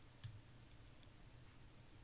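Near silence: faint room tone with a low steady hum and a single faint click about a quarter second in.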